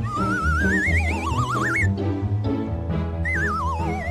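Cartoon background music with a warbling, whistle-like sound effect for a flying meteor: two wavering tones rise during the first two seconds, then a third falls in pitch from about three seconds in.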